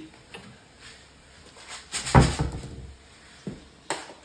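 Kitchen handling sounds: a loud knock or thud about two seconds in, typical of a cupboard door or packaging being handled, and a single sharp click near the end.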